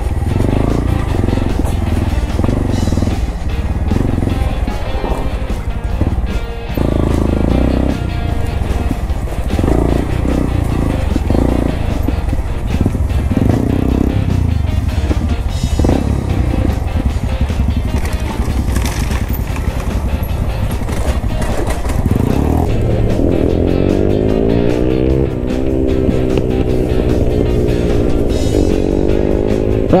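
Honda Grom's small single-cylinder engine running under throttle as the bike rides a dirt trail, heard together with background music. In the last several seconds the engine's pitch climbs and falls several times as it revs.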